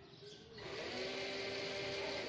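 The small DC gear motors of a robot car, driven through an L298N motor driver, whine as they spin up about half a second in. They then run steadily with a buzzing gear noise.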